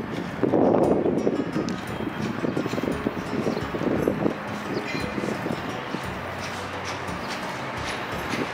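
Outdoor street ambience with footsteps clicking on stone paving as the person filming walks, and a louder burst of noise about half a second in.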